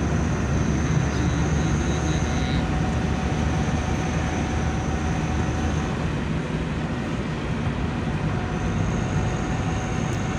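Steady engine and road noise inside a car's cabin while driving at a steady speed.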